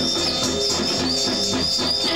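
Live band playing, with electric guitar and drums. A high wavering tone recurs over the music about twice a second.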